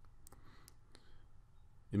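A few faint, sharp computer mouse clicks, bunched in the first second, over low background hiss.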